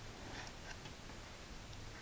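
Cardboard egg carrier being handled as its compartments are opened: a few faint, light ticks and taps of cardboard.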